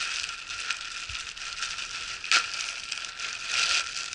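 Plastic postal mailer bag crinkling and tearing as it is pulled open by hand. There is a sharp louder rustle a little over two seconds in and a longer one near the end.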